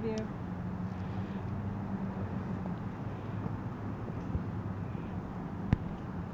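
Outdoor background noise with a low steady hum of distant road traffic, and one sharp click near the end.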